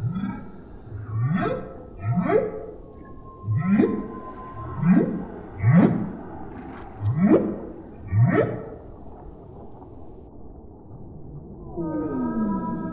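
Humpback whale calls: a series of about eight short whoops, each sweeping upward in pitch, coming roughly once a second before they stop.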